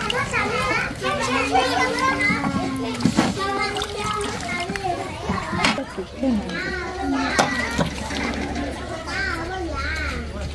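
Several high-pitched voices talking and calling, with two sharp knocks about three and six seconds in.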